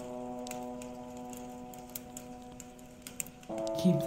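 Wood fire crackling, with sharp irregular pops and snaps over a steady held musical drone note. A new sustained chord comes in near the end.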